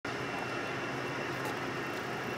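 Steady outdoor background hum and hiss with no distinct events, like distant traffic or building ambience.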